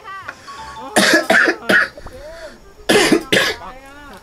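Music and Thai speech from a video soundtrack, with gliding and wobbling sound-effect tones, broken twice by a man coughing in loud bursts, about a second in and again about three seconds in.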